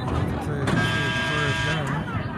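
A horn sounds once, a steady held note lasting about a second, over voices and chatter from the crowd.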